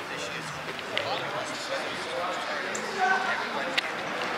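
Background chatter of people talking at a distance, with a sharp click near the end.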